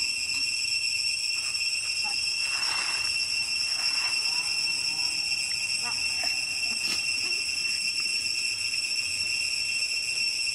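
Steady, high-pitched insect drone, typical of a cicada chorus, holding one unchanging buzzing pitch throughout. A few faint rustles and small squeaks come through in the middle.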